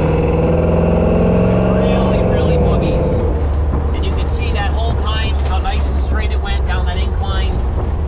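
Ford 351 Windsor V8 in a 1976 Ford Bronco accelerating under throttle, its note rising steadily for about three seconds, then dropping back to a low, steady drone.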